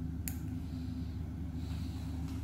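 Steady low hum of room equipment, with one sharp click about a quarter of a second in from the metal instruments used to snip and pull out finger stitches.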